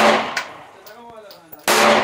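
9mm semi-automatic pistol firing Sterling 124-grain 9x19 mm rounds: two sharp shots, one at the start and one near the end, about 1.8 s apart, each dying away over about half a second.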